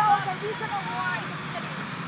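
A voice trails off in the first second, over a steady low mechanical drone that goes on underneath.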